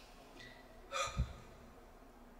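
A tearful woman takes one quick breath close to the microphone about a second in, with a low pop on the mic just after it.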